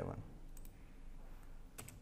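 Faint room tone broken by a few sharp clicks from a computer's mouse and keyboard, the clearest ones near the end.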